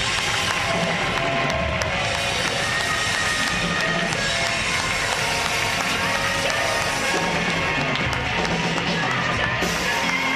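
Live worship music from a band, played steadily and loud in a large hall, with a congregation clapping along.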